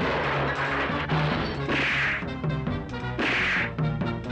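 Dubbed fight-scene punch and smash sound effects, with the two loudest hits about two and about three and a half seconds in, over background music.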